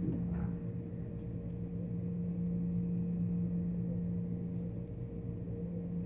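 Steady low machine hum, like a fan or air-conditioning unit running, holding one even tone throughout, with a few faint ticks.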